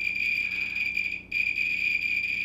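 Thermo Scientific RadEye B20 radiation survey meter's beeper sounding a steady high-pitched electronic tone, with a brief break a little after a second in. It sounds while the meter sits on a uranium-glazed plate reading about 10 microsieverts per hour.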